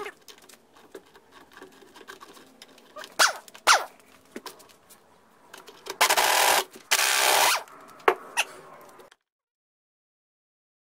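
Impact wrench run in two short bursts of well over half a second each, spinning off the nut that holds the tiller handle on a small Johnson outboard. Two sharp clicks come a few seconds earlier, and the sound cuts to silence about a second before the end.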